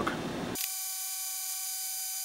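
A steady electronic buzzing tone made of several fixed high pitches with no low end. It starts abruptly about half a second in and holds at an even level, after faint room noise.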